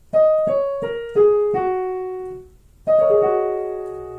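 Digital piano played on the black keys, the groups of two and three: five notes struck one after another, stepping downward and ringing on, then about three seconds in a second, quicker downward sweep over the same notes. The black-key pattern is played as a 'wind blowing' sound effect.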